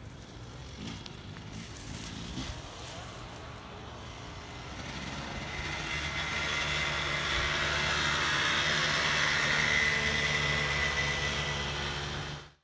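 Dirt bike engine running as the bike rides toward the microphone, growing steadily louder through the second half and staying loud until the sound cuts off just after the end.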